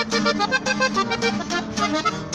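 Accordion and strummed guitar playing the instrumental opening of a norteño ranchera: held accordion notes over a quick, even strummed beat.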